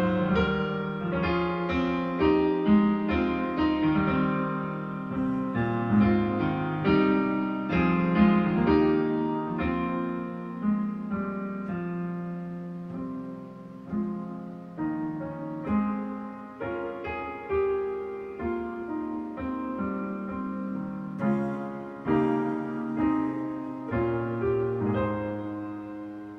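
A hymn played on a digital piano, full chords moving at a slow, even pace, with a softer passage in the middle.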